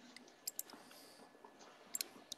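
A few faint computer mouse clicks over quiet room tone: a pair about half a second in and one more near the end.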